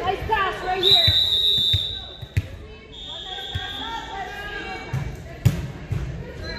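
A volleyball referee's whistle blows twice, each blast steady and about a second long, in an echoing gym. Around it the ball bounces a few times on the hardwood floor, players' voices sound at the start, and near the end comes a single sharp smack, the loudest sound here, which fits the serve being struck.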